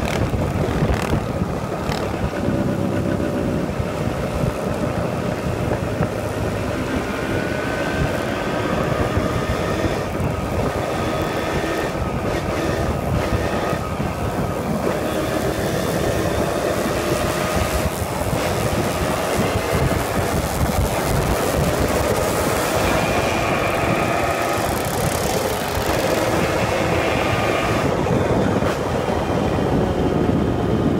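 Small motorcycle engines running at riding speed, their pitch slowly rising and falling with the throttle, over a steady rumble of road and wind noise.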